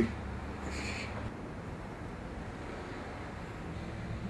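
Room tone: a low steady background hum, with a faint short hiss about a second in.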